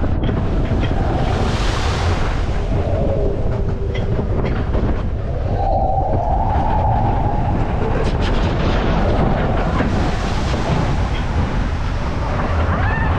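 Matterhorn Bobsleds coaster car running along its tubular steel track: a steady rumble of the wheels with clacking, and wind buffeting the microphone.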